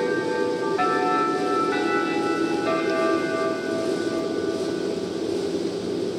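Station platform chime: a short melody of bell-like notes, a new note about every second for the first few seconds, ringing on and fading out. Under it, the steady rumble of the diesel railcar running slowly into the platform.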